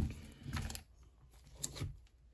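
A few light clicks and taps of plastic trading-card top loaders and slabs knocking together as a stack of cards is handled and moved.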